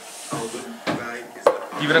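Light handling knocks on a wooden tabletop, with one sharp click about one and a half seconds in; a man's voice starts near the end.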